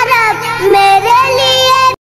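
A child singing an Urdu song in long, held notes that glide between pitches; the singing cuts off abruptly just before the end.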